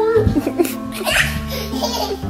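Toddlers giggling and laughing as they play, over background music with steady held low notes.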